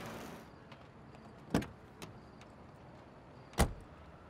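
A car's engine cuts off, then a car door shuts twice, about two seconds apart, the second shut the louder, with a lighter click in between.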